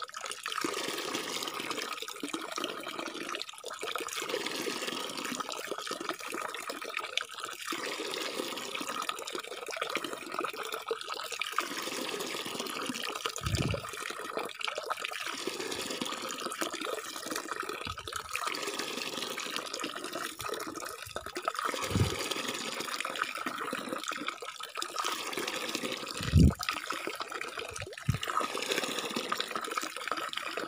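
A thin stream of water falling from a pipe into a plastic jerrycan tub already holding water: a steady splashing trickle. A few low bumps break in, the loudest near the end.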